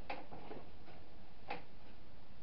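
A few light clicks and taps of small things being picked up and handled at a table, the sharpest about a second and a half in, over a steady hiss.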